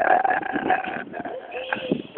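A man's voice making drawn-out wordless 'ah' noises, loud at first and then quieter and broken up after about a second.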